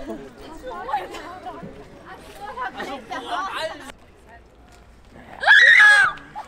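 Passers-by talking and laughing, then a short, loud, high-pitched scream near the end, rising sharply at its start.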